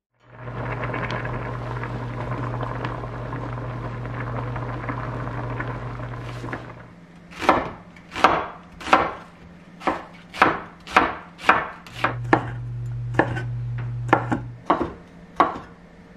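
A steady whirring hum for the first seven seconds or so. Then a kitchen knife slicing an onion on a wooden cutting board, the blade knocking the board about a dozen times at an uneven pace, with the hum back under it for a couple of seconds.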